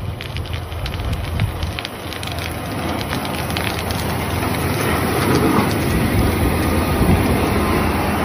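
A Caterpillar 140M motor grader's blade pushing a carpet of Mormon crickets along an asphalt highway. A dense crunching and crackling sits over the grader's low diesel engine rumble and grows louder as it passes. The crunching could be crushed crickets or the blade scraping the asphalt; the listener can't say which.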